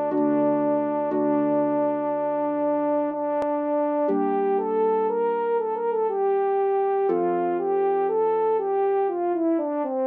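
French horn and harp playing a Renaissance recercada: long held notes at first, then from about four seconds in a moving line of changing notes that steps downward near the end.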